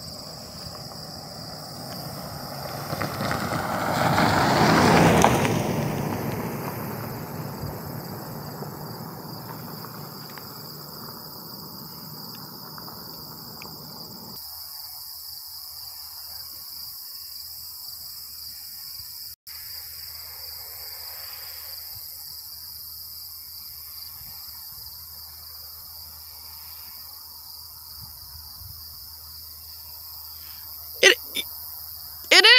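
Insects, crickets or cicadas, buzzing steadily in a high, even band. A broad rush of noise swells over the first few seconds, peaks about five seconds in and fades away by the middle.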